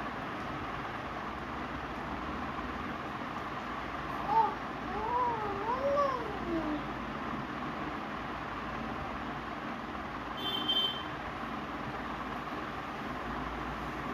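A cat meowing in the background: a drawn-out, wavering call that rises and falls in pitch a few times, about four to seven seconds in, over a steady background hiss. A brief high squeak follows near the eleventh second.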